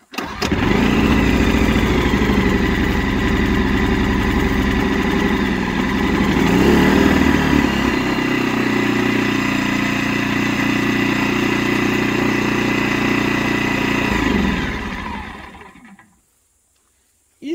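Einhell TC-IG 2000 inverter generator's four-stroke petrol engine pull-started and catching at once, then running steadily while still cold. Its speed rises about six seconds in and settles back to a lower steady note, and near the end it is shut off and runs down to a stop.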